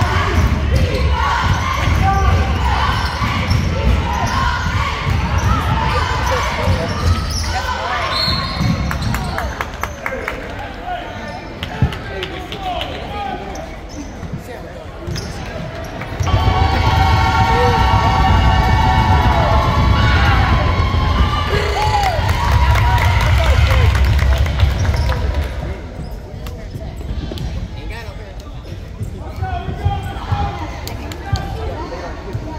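Game sounds of a basketball game in a school gym: the ball bouncing on the hardwood, with players and spectators calling out. About halfway through, a louder held sound lasts several seconds as play stops for a foul call.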